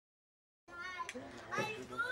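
Dead silence for about the first half-second, then children's voices talking and laughing.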